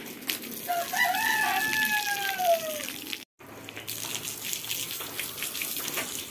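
A rooster crows once, a long call that rises and then falls away, about a second in, over the steady spray of water from a hose. The sound cuts out for a moment about three seconds in.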